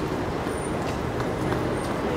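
Steady city street traffic noise from passing road vehicles.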